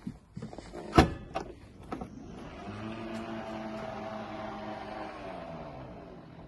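Range Rover Sport powered tailgate opening: a few clicks and a loud clunk from the latch releasing about a second in, then the tailgate motor runs with a steady whine as the boot lid lifts, its pitch dropping slightly near the end.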